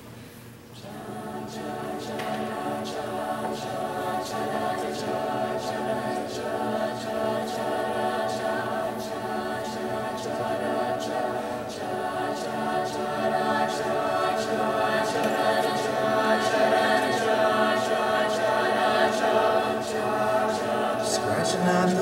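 Mixed a cappella vocal group singing a sustained wordless backing chord. It starts about a second in and gradually swells louder, with crisp rhythmic clicks about twice a second keeping time.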